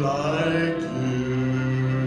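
A man singing a solo, his voice moving through a phrase and then holding one long low note from about a second in.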